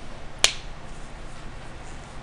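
A single sharp click about half a second in, over a faint steady low hum.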